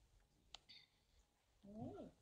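Near silence: room tone, with one faint sharp click about a quarter of the way in and a voice starting to speak near the end.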